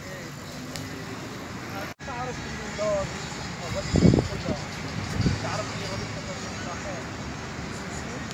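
Outdoor street ambience: steady traffic noise with distant voices, and two short louder bursts about halfway through.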